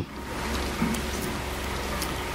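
Steady, even hiss with a low hum underneath.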